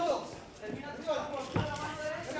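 A single thud about one and a half seconds in, from the fighters in the cage, against faint voices in the arena.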